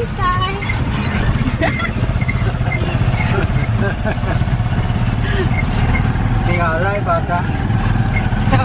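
Motorcycle engine of a tricycle (motorcycle with passenger sidecar) running steadily under way, heard from inside the sidecar. Voices come and go over it.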